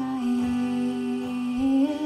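A woman's singing voice holding one long note on the lyric "mama", stepping up in pitch near the end.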